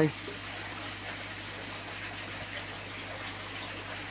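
Water trickling steadily from a garden koi pond's water feature, with a low steady hum underneath.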